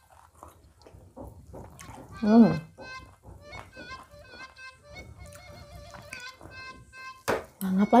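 Soft background music with a wavering melody, over faint clicks of fingers picking food from a plate. A short vocal hum about two seconds in and a sharp click near the end.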